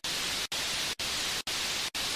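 A steady static-like hiss, cut by brief dropouts about twice a second.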